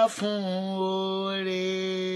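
A woman chanting a sung prayer. After a brief break just at the start, she holds one long, level note.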